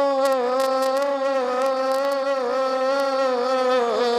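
Stage accompaniment music: a wind instrument plays one continuous melodic line of held, gently wavering notes, with scattered light high taps. Near the end the line dips and gives way to a steadier held note.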